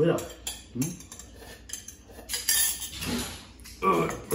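Metal spoons clinking and scraping against ceramic bowls in a few short, scattered knocks while people eat.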